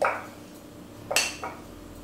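A metal spoon knocking and scraping against a small glass jar: a dull knock at the start, then two sharp clinks about a second in, the first the louder.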